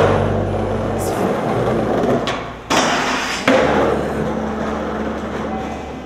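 Raw skateboard sound: wheels rolling on pavement with a steady rough noise, and two sharp board impacts about two and a half and three and a half seconds in.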